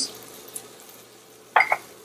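Chopped chillies tipped from a bowl into a pan of onions sweating in olive oil, over a faint sizzle, with a short clink of utensils against the pan about one and a half seconds in.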